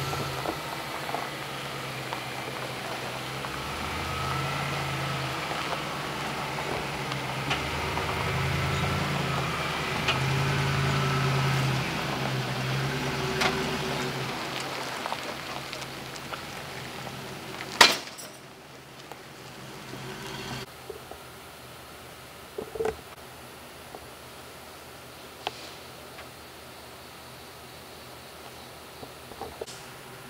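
Tow truck engine working under load as it drags a stripped pickup, growing louder and then fading away about halfway through. A single sharp bang comes about two-thirds of the way in, followed by a few faint clicks.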